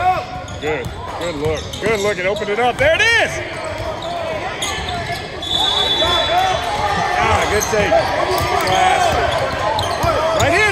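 Indoor basketball play on a hardwood court: many short rubber-sneaker squeaks on the floor, thickest in the second half, with a ball being dribbled and voices of players and onlookers in the gym.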